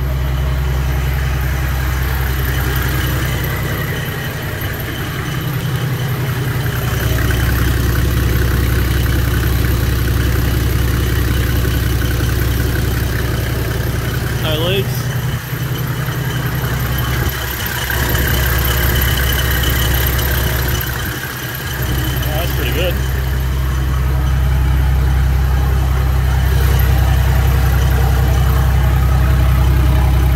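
Toyota 1HZ 4.2-litre inline-six diesel, fitted with a DTS TD05 turbo, idling steadily on its first test run with only the dump and front pipe in place, so the exhaust is open. A steady high whine sits over the engine note.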